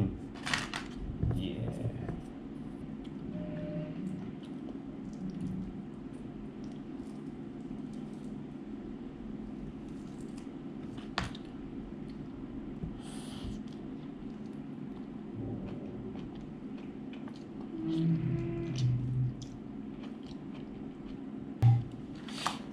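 Steady low room hum with scattered small clicks and rustles of hands handling food and plastic takeaway containers, and one sharp click about eleven seconds in.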